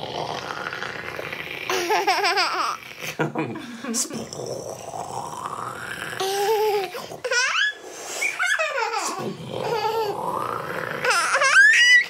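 Adults laughing while a baby giggles and squeals as he is played with, with a voice rising sharply in pitch near the end.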